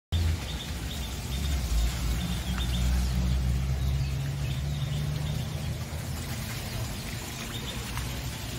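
Birds chirping faintly over a steady low rumble that eases off about five seconds in.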